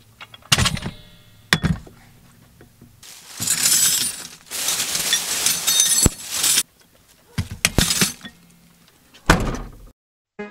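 Tools and bags being loaded into a pickup truck bed: a string of sharp clanks and thuds as a metal floor jack, its handle and other items are set down on the bed, with a few seconds of plastic shopping bags rustling in the middle.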